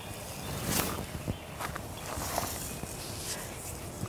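Quiet handling of a garden hose and its spray wand, with footsteps on pine-straw ground and a few soft knocks and rustles.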